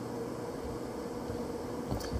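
Steady background hum of a machine shop, with a faint steady tone running through it. A soft low thump comes near the end.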